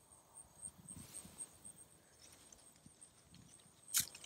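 Faint footsteps and rustling through grass as a person walks, with soft irregular low thumps. A faint, high, evenly pulsing tone runs underneath, and a single sharp click comes right at the end.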